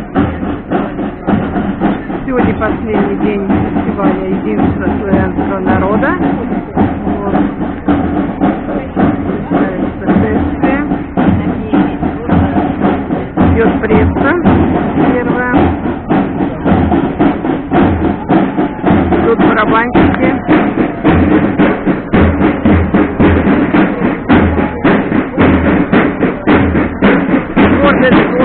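Music with a steady bass-drum beat, heard over people talking.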